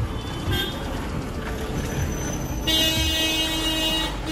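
Road traffic noise, then a vehicle horn sounding one long steady honk starting about two-thirds of the way in.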